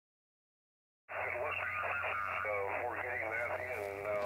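Xiegu G90 HF transceiver's speaker playing a received lower-sideband voice station: a thin, narrow-band human voice over a steady low hum. It comes in suddenly about a second in, after silence.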